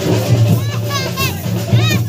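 High-pitched voices singing and calling out together over music with a steady low hum underneath.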